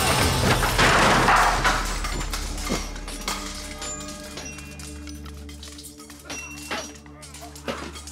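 Dramatic film score with a low sustained drone over a sword fight: a loud crash in the first two seconds, then scattered sharp metallic clinks as the music grows quieter.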